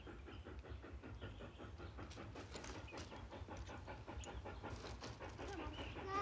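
Steam locomotive running in the distance: a fast, even chuffing over a low rumble.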